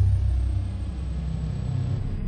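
A steady deep rumble, a bass-heavy sound-effect drone from the animated intro graphic's soundtrack, with a faint high tone sliding downward at the start.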